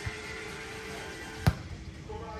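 Background music playing, with one sharp smack about one and a half seconds in: a volleyball struck by a player's hands or forearms.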